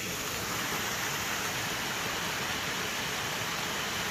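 Small ornamental waterfall tumbling over rocks into a pond: a steady, even rush of falling water that sets in suddenly at the start.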